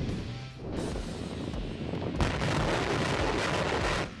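Rocket launch roar, a steady rushing blast that swells louder about two seconds in, over background music.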